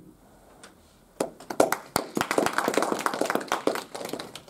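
A small group of people applauding with a run of quick hand claps, starting about a second in and lasting about three seconds before dying away.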